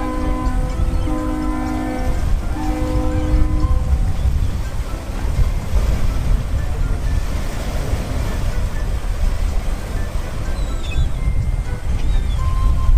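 Ferry's horn sounding three short blasts, the signal for going astern as the ship backs off its berth. Then a steady low rumble of engines and propeller wash.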